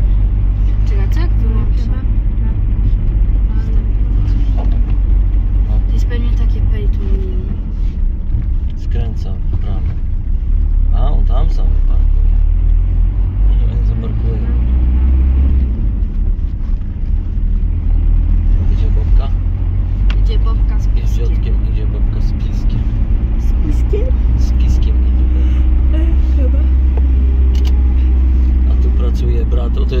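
Car driving in town, heard from inside the cabin: a steady low rumble of engine and tyres on the road.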